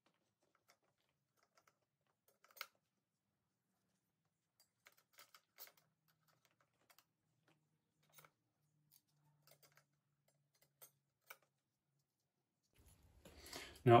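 Faint, sparse clicks of clutch discs being set one at a time into a dirt bike's clutch basket, the loudest about two and a half seconds in.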